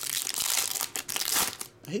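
Clear plastic trading-card pack wrapper crinkling as it is pulled apart by hand. It is a dense crackle that stops just before the end.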